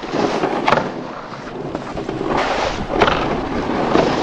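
Snowboards sliding over snow, a steady rushing scrape, with wind buffeting the microphone. A few short sharp clicks come through, about a second in and near three seconds.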